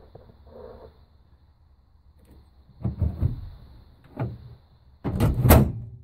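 The Holden panel van's tailgate and its custom handle-and-latch mechanism clunking as they are handled: a few knocks, the loudest one near the end.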